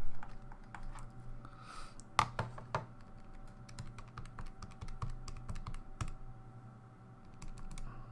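Keys tapped on a keyboard in quick, irregular light clicks, a few louder ones about two seconds in, as a calculation is keyed in. A faint steady hum underneath.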